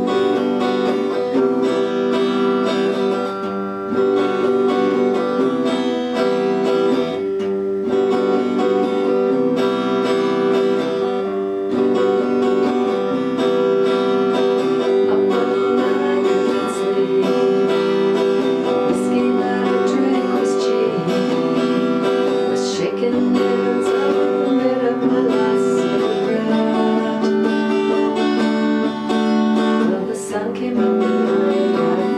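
Electric guitar playing the chords of a song through in standard tuning.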